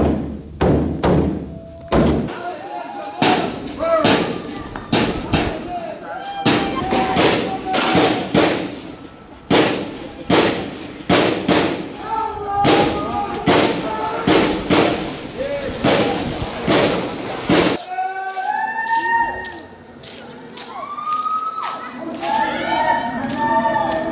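Repeated loud thuds, one or two a second, with men shouting between them; the thuds stop after about 18 s and the shouting goes on.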